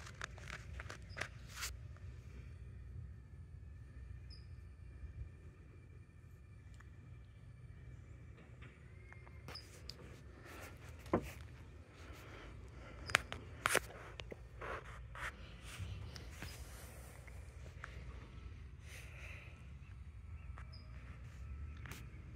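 Faint outdoor background: a low steady rumble with a few scattered sharp clicks, the loudest a little past the middle.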